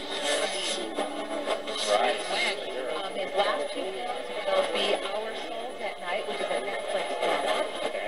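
A Sangean PR-D6 portable radio playing an AM station through its small speaker. Indistinct talk comes through thin and bassless, mixed with static hiss and faint steady interference whistles, as from a distant station received at night.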